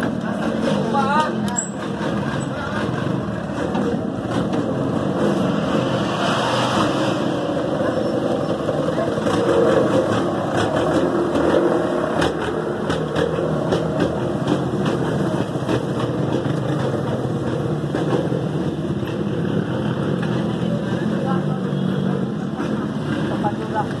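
Riding noise of a pedal tricycle rolling over concrete: a steady rumble with many small rattles from its metal sidecar frame, and faint voices in the background.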